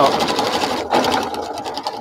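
Domestic sewing machine running at a steady stitching rate as it sews through a quilt, with a brief break about a second in and growing quieter toward the end.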